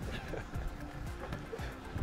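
Background music with a regular beat.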